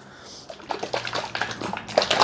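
A bottle of Bar's Leaks Block Seal liquid stop leak being shaken by hand. About half a second in, the liquid starts sloshing rapidly against the plastic bottle, mixing the sealer before it is poured.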